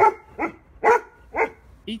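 A dog barking four times, about half a second apart.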